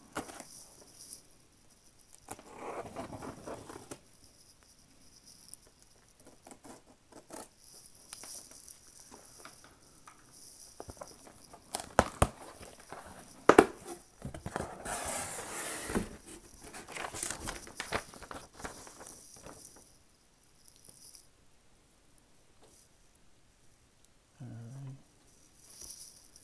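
A cardboard shipping box being opened by hand: intermittent rustling and tearing of packaging, two sharp knocks about halfway through, then a longer rasping tear.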